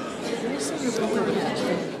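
Murmur of many people talking at once in a large chamber, overlapping voices with no single clear speaker.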